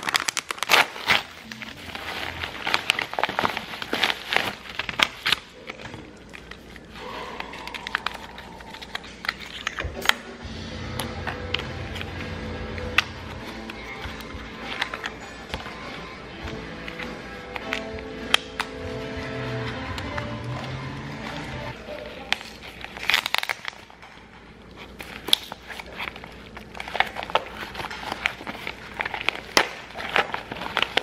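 A plastic water bottle squeezed and crinkled in the hand, a dense run of crackles for the first five seconds or so. Then background music with held notes, and near the end more crinkling of plastic packaging being handled and opened.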